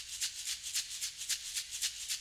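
A shaker in the background music, playing a steady fast rhythm of about six strokes a second.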